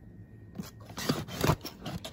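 A few scrapes and knocks of an item being handled and set down on a store shelf, the loudest about a second and a half in.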